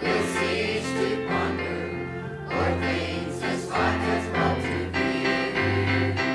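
Mixed church choir singing a hymn, with instrumental accompaniment holding low bass notes beneath the voices.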